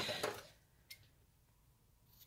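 Soft handling noise from hands and tools on a wooden tabletop, dying away within half a second, then near silence broken by one faint click about a second in.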